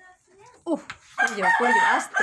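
A pet green parakeet calling loudly: a short cry, then a long, drawn-out call starting just past a second in.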